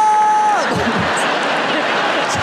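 A man's high, drawn-out vocal shout into a microphone, held steady for about half a second and then sliding down in pitch, followed by an audience laughing and clapping.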